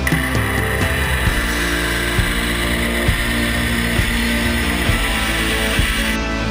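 Background rock music with a steady beat over a belt grinder running steadily as a knife blade is ground against its contact wheel.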